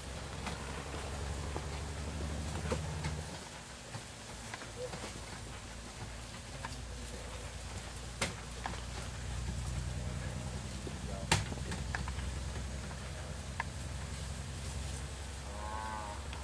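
A low droning hum for the first few seconds and again through the second half, with a few sharp clicks.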